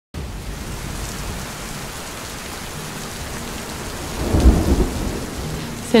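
Steady heavy rain falling, with a low rumble of thunder swelling about four seconds in.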